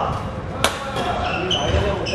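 Badminton racket striking the shuttlecock: one sharp crack under a second in, with voices of players around it.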